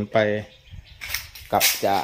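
A man speaking Thai, with a short pause in the middle.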